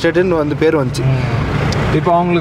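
Engine and road noise of a moving vehicle heard from on board: a steady low hum under a broad hiss, which comes to the fore about a second in once the talking stops.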